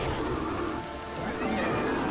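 Film score with the demon nun's wailing shrieks, which bend up and down in pitch. The wailing swells again about a second and a half in, over held, sustained notes in the music.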